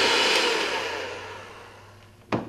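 Electric hand mixer running, its beaters working through thick gingerbread batter in a plastic bowl; the steady whir fades away over the second half.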